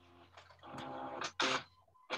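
Faint, garbled snatches of a voice over a video call whose audio is dropping out, with short hissing sounds about halfway through.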